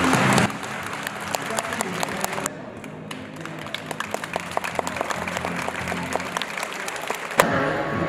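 A crowd clapping: scattered, irregular hand claps over a faint music bed. Near the end, louder music cuts in abruptly.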